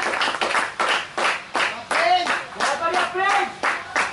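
Hands clapping, about three or four claps a second in an uneven rhythm, mixed with raised voices calling out across a cricket field.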